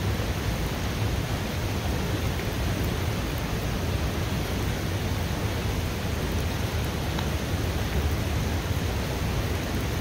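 Steady heavy rain mixed with the rush of a fast-flowing river, an even noise with a deep low rumble and no break.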